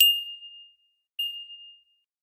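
Two bright chime dings about a second apart, each a single clear high tone that rings briefly and fades: a bell-like sound effect.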